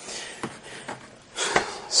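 A small bottle of root beer mix is handled and set down on a tabletop, making faint handling noise and a light tap about one and a half seconds in.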